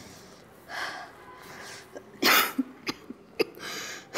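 A person coughing in short bouts, a faint cough about a second in and the loudest just after two seconds.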